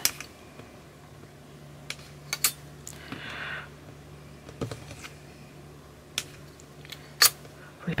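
A few sharp light clicks of a long flat clay blade touching down on a hard tile as a thin strip of polymer clay is cut and handled, with a short soft scrape about three seconds in. A faint steady low hum runs underneath.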